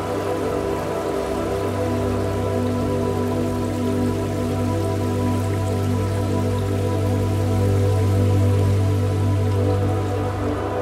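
Ambient new-age meditation music of sustained, layered tones over a steady low drone, with no beat.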